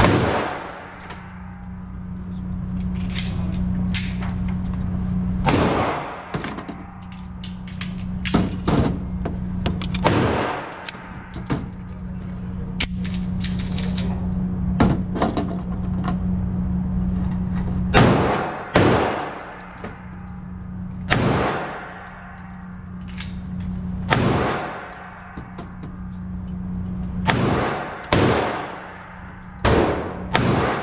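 Gunshots echoing in an indoor shooting range, more than a dozen sharp reports at irregular intervals, each ringing off the walls. Under the shots runs a steady low hum.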